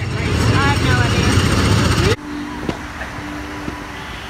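Wind rumbling on a phone microphone outdoors, with faint voices in the background; about two seconds in it cuts off suddenly to a quieter outdoor background with a faint steady hum and distant voices.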